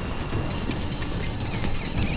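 Many hooves of a migrating herd of grazing animals, most likely zebra and wildebeest, drumming on the ground as the herd moves.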